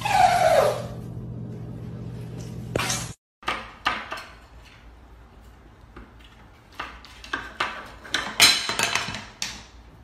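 A wooden spoon rattles in the handles of a wooden kitchen cabinet door as a cat paws and pulls at the door, knocking it against its frame. It makes a run of sharp knocks and clicks that come closer together near the end. At the very start there is a short falling cry over a low hum.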